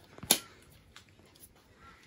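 A single sharp click about a third of a second in, with a few fainter taps of hands handling things; otherwise a quiet room.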